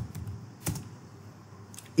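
Computer keyboard keys being typed: a few separate keystrokes, spaced well apart, as a line of code is entered.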